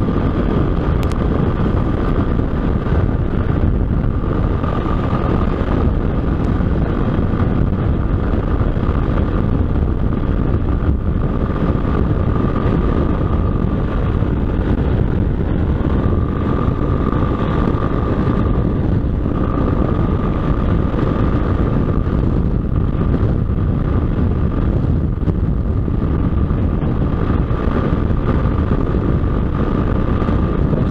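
Motorcycle cruising at highway speed: a steady engine and road drone with wind rushing over the microphone, and a steady high whine riding over it.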